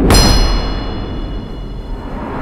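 Cinematic impact sound effect: a sudden heavy hit with a metallic clang whose high ringing tones fade over about a second and a half, over a deep rumble.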